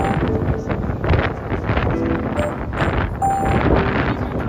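Wind buffeting the microphone, a loud low rumbling rush, with background music playing underneath.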